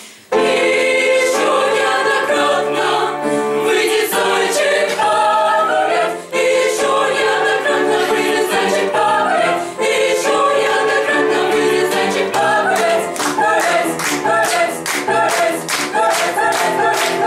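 Mixed choir of young women's and men's voices singing in parts, unaccompanied, entering abruptly just after the start and continuing with a short break about six seconds in.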